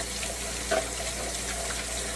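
Kitchen faucet running steadily into the sink, water splashing in and around a stainless steel cup as it is swirled and rinsed.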